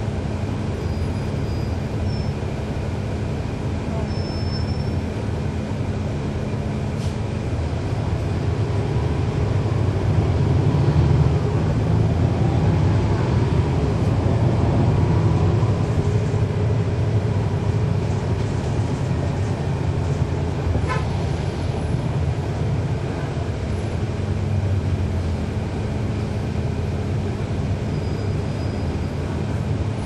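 NABI 40-foot transit bus with a Cummins ISL9 diesel engine, running steadily, then growing louder as it pulls away for several seconds from about ten seconds in, with a faint rising whine, before easing back to a steadier hum near the end.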